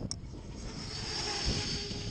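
Radio-controlled car running at speed on asphalt, its motor giving a high-pitched whine that builds about half a second in and holds.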